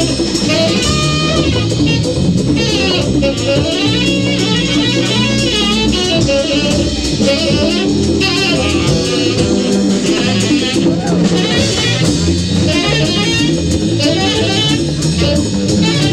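Live jazz quintet playing a fast, dense ensemble passage: electric bass, tenor saxophones, drum kit and hand percussion, all going at once.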